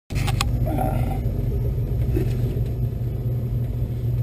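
Steady low rumble in a glider's cockpit as it rolls along a dirt airstrip.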